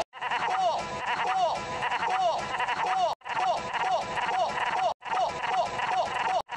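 High-pitched cartoon voice laughing in short rising-and-falling cries, about two a second, broken twice by abrupt edit cuts.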